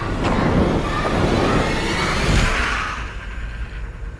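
Film sound design: a loud rushing, rustling noise that builds to a peak about two and a half seconds in and then fades away.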